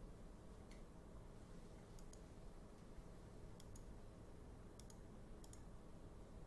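Near silence with a few faint computer mouse clicks, several in quick pairs.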